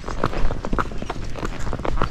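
Missouri Fox Trotter's hooves clopping on a paved road as the horse moves forward, a run of irregular sharp hoofbeats.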